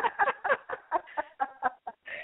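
A woman laughing: a quick run of short, breathy laughs, about seven a second, fading toward the end.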